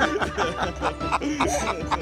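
People laughing in quick repeated ha-ha pulses, with background music underneath.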